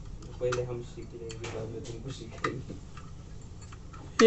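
Small metal clicks and ticks, about half a dozen at uneven intervals, as the hinged wire pot-support arms of a compact portable camping gas stove are swung open and snap into place.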